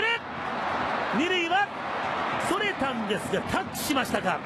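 A voice speaking in short phrases over the steady noise of a baseball stadium crowd.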